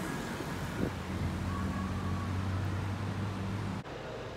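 Steady low machine hum, like an engine running at a constant speed, over outdoor traffic noise. It cuts off abruptly near the end.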